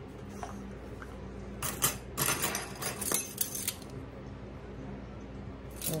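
Metal measuring spoons clinking and scraping against a wooden salt box as salt is scooped out: a run of small clicks lasting about two seconds, starting a second and a half in.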